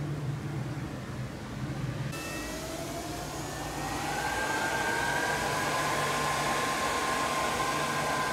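Charging electronics of a Zero SR/F electric motorcycle whirring as a charging session ramps up. A low steady hum gives way after about two seconds to a whine that rises slowly in pitch and then levels off, as the charging power climbs.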